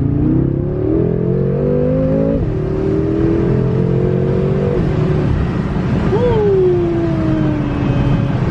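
BMW M5 Competition's twin-turbo 4.4-litre V8 under full-throttle acceleration, heard from inside the cabin. The revs climb, drop sharply at an upshift about two and a half seconds in, and climb again to a second upshift near five seconds. Near the end the engine note briefly jumps, then falls in a long glide as the car comes off the power.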